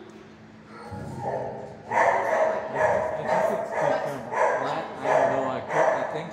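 A dog barking repeatedly, about two barks a second, starting about two seconds in.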